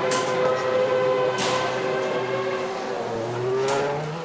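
BMW Sauber Formula One car's V8 engine running steadily, rising in pitch about three seconds in, with a few brief sharp bursts along the way.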